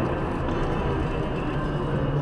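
Steady running noise of a moving vehicle: a low, even hum under a wash of road noise, with no sudden events.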